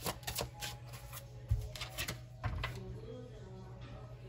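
Tarot deck being shuffled by hand: a quick run of card clicks and flicks in the first second, then a few scattered taps.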